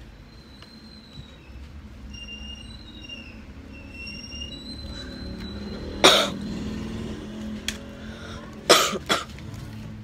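A person coughing: one cough about six seconds in, then two quick coughs near the end, over a low steady hum. Faint high chirping tones sound in the first half.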